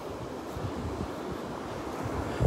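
Steady wash of small surf breaking on a sandy beach, with wind buffeting the microphone in low rumbles.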